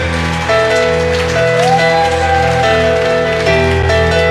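Live band playing an instrumental passage without vocals: held, steady notes over a continuous bass line, with one note sliding up about a second and a half in.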